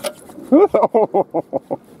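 A person laughing: a run of about eight short "ha" bursts, the first the longest, then quicker and shorter ones.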